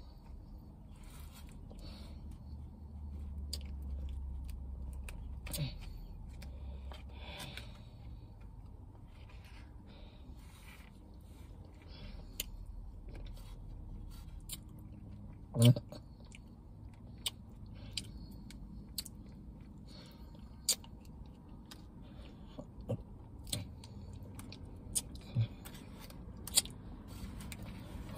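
A person eating ice cream close to the microphone: scattered wet mouth clicks and lip smacks from chewing and swallowing, with one louder short mouth sound about halfway through.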